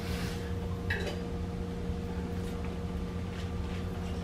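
Steady low hum with a few faint, short ticks about a second apart.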